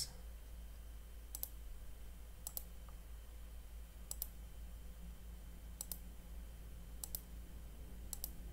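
A computer mouse button clicking five times, a second or two apart, each click a quick press-and-release pair, over a faint low hum.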